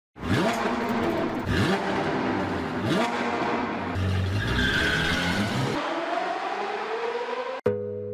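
Sports car engine revving hard, its pitch climbing and dropping back three times as if shifting up, then tyres squealing and a long rising run. About half a second before the end it cuts off sharply to plucked guitar music.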